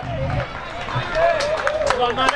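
Several people calling out across an outdoor football pitch, their words unclear, with a quick run of sharp knocks around a second and a half in.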